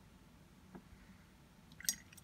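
Paintbrushes being handled while one is picked out. There is a faint tick about three-quarters of a second in, then a brief sharp clatter of small hard clicks near the end, with quiet room tone between.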